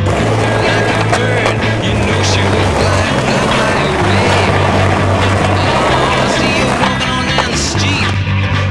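Skateboard wheels rolling on smooth concrete, with a few sharp clacks of the board, under background music with a steady bass line.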